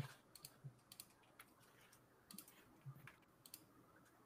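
Faint, irregular computer keyboard keystrokes, a handful of scattered clicks with a slightly stronger one at the start, over near silence.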